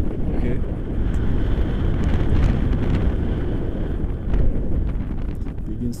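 Wind buffeting the microphone of a camera carried on a paraglider in flight: a steady low rumble that rises and falls in gusts.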